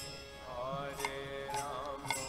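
Indian devotional music with a gliding, wavering melody and a couple of sharp percussion strikes.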